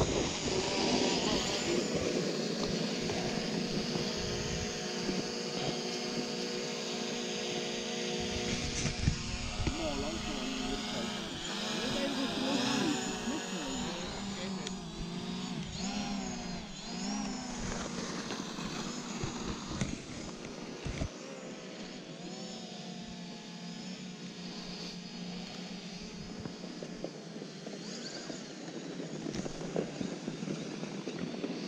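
Small camera drone's propellers whirring with a steady multi-tone whine, the pitch wavering up and down as it manoeuvres in the middle and the sound growing somewhat quieter later on.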